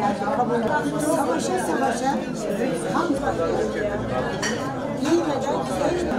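Several people talking over one another at dining tables, a steady murmur of conversation with a light clink of tableware now and then.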